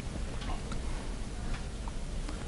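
Classroom room tone: a steady low hum with a few faint, irregularly spaced light clicks.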